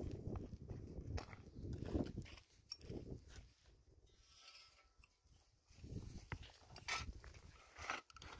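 Digging and scraping in dry, stony soil, with two sharp clinks of a tool striking stone near the end.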